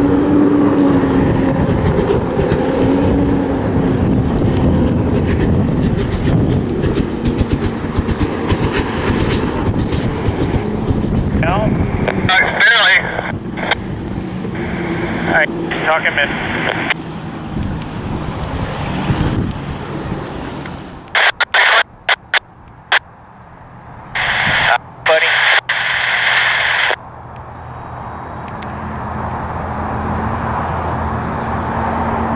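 Unlimited hydroplane's turbine engine running at speed on the water, a loud rushing noise with a thin high whine that slowly falls in pitch. It grows weaker partway through and is broken by abrupt gaps near the end.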